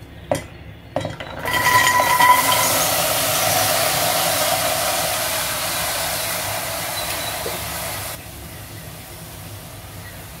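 Soaked chickpeas pouring from a bowl into an empty aluminium pressure cooker: a couple of light clinks, then a dense rattling cascade with a ringing note from the pot at first, growing gradually softer and stopping suddenly near the end.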